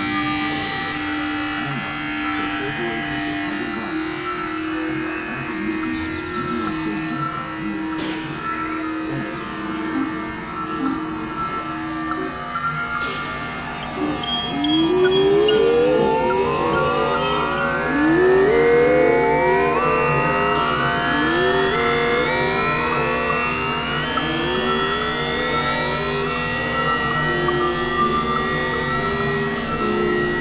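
Experimental electronic synthesizer drone music: layered steady tones with intermittent high hissy pulses. About halfway through, rising pitch sweeps begin and repeat every two to three seconds.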